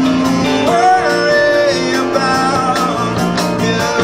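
Live rock band playing: electric guitars and drums, with a voice singing over them.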